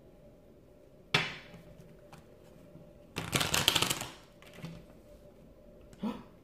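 A deck of angel oracle cards being handled and shuffled: a sharp tap about a second in, then a burst of rapid riffling clicks lasting about a second, around three seconds in.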